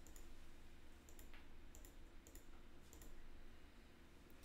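Faint computer mouse clicks, several spaced about half a second apart, stepping a chart replay forward, over a low steady hum of room tone.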